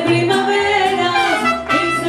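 Mariachi band playing, trumpets carrying the melody in held notes, with singing.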